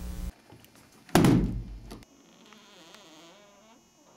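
A single heavy thunk about a second in, fading away over most of a second, followed by faint room tone.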